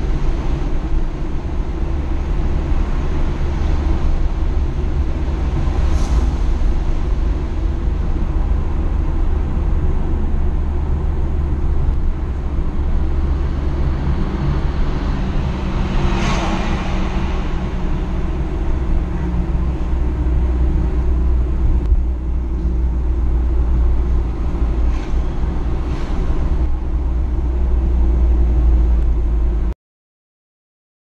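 Engine and tyre noise heard inside a car driving through a road tunnel: a steady low rumble, with a passing vehicle swelling briefly about halfway through. The sound cuts off suddenly just before the end.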